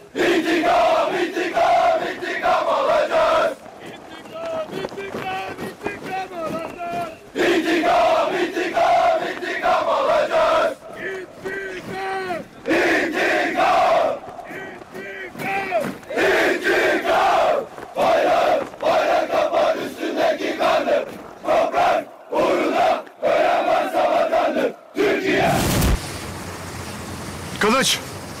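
A group of soldiers' voices shouting a revenge battle cry in unison, chanting "revenge" over and over in loud bursts of a second or two with short breaks between.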